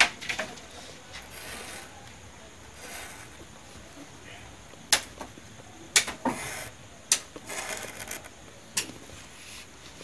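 A pen-like stylus scratching lines into a green leaf on a wooden board: short rasping strokes, with a few sharp taps from about halfway through.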